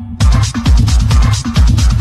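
Techno with a steady, evenly spaced heavy kick drum and dense hi-hats. The high end is cut out at the very start and snaps back in a fraction of a second later, bringing the full beat back.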